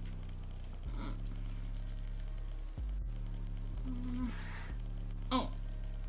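Background music with low notes that change about once a second, under faint rustling as a small pouch is worked open by hand, a little louder about four seconds in.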